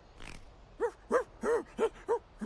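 A voice chuckling: a short breathy hiss, then a quick run of about six short pitched syllables, each rising and falling.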